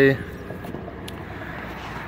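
A man's voice trailing off on a drawn-out 'a...', then steady low outdoor background noise with one faint click about a second in.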